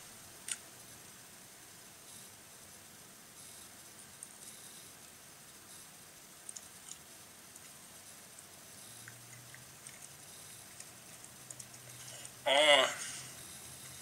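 Faint small clicks from a man chewing a soft banana in a quiet room, with a low steady hum coming in about nine seconds in. Near the end he makes one short, loud vocal sound with his mouth full.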